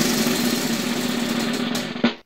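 Prize wheel spinning, its red plastic pointer clicking rapidly over the pegs in a dense, steady rattle until the wheel comes to rest at the end.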